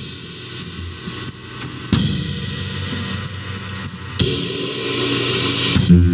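Live stage music led by a drum kit: cymbal and drum accents about two seconds apart, the last opening into a sustained cymbal wash that builds toward the end. Heard through a video-call stream.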